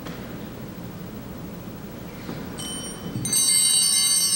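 Quiet hiss, then several high ringing chime-like tones sounding together, coming in about two and a half seconds in and growing louder.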